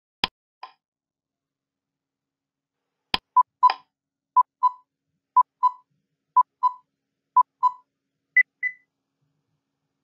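Quiz-game countdown timer sound effect: a sharp click near the start and another about three seconds in, then pairs of short electronic beeps once a second, five times, ending with a higher-pitched pair as the answer time runs down.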